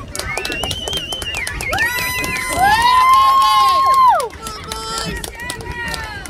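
Young cheerleaders and a woman shouting drawn-out, high-pitched cheers, several voices overlapping; the loudest shout is held for about a second and a half around the middle and then breaks off. Short sharp clicks are scattered through it.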